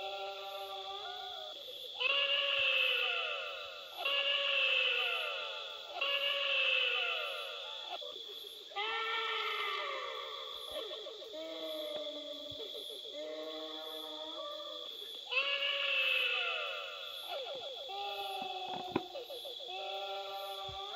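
Eerie wailing, bleat-like voice effect in repeated phrases about two seconds long, each starting abruptly and fading, over a steady spooky music track.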